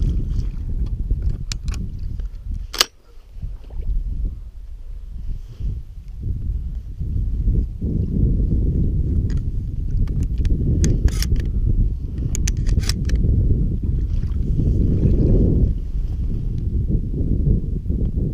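Wading through shallow sea water: a steady low sloshing of legs pushing through the water in uneven surges. A sharp click comes about three seconds in, and a few lighter clicks come around the middle.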